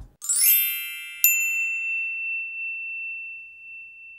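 Logo sting of chimes: a shimmering swell of high bell-like tones, then a single bright ding a little over a second in that rings on and slowly fades.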